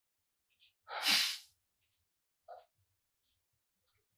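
A single short, noisy burst of breath from a person, about a second in.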